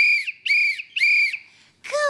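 A hand-held whistle blown in three short blasts, each a steady high tone with a slight rise and fall in pitch.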